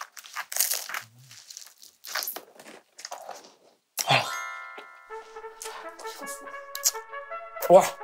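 Crunching bites and chewing of a slice of pizza, close to the microphone, for the first four seconds. About four seconds in, music with held brass notes comes in and continues under a short exclamation near the end.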